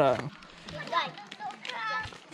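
Children's voices calling and chattering at play, quieter after a louder voice breaks off at the very start.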